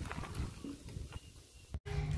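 Bicycle rattling with irregular light knocks as it is ridden over a rough dirt road, busier at first and quieter later, cutting off suddenly near the end.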